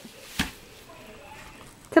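A single sharp knock about half a second in, followed by a faint, brief vocal sound.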